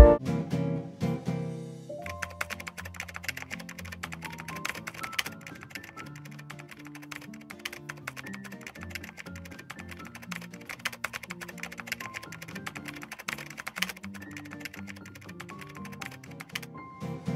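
Rapid clicks of a phone's on-screen keyboard as text is typed, starting about two seconds in, over background music.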